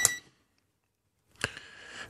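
ANENG AN8008 digital multimeter giving one short high beep as its rotary dial is switched to volts, then silence until a single click about one and a half seconds in.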